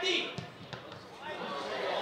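Outdoor football pitch sound: a loud shout from the players trails off at the start, leaving faint distant voices and a couple of short dull thuds about half a second apart.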